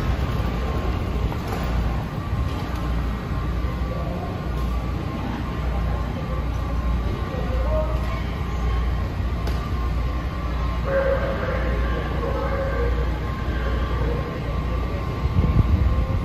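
Washington Metro railcar standing at an underground platform with its doors open: a steady low rumble of the train's onboard equipment, with a thin steady whine above it.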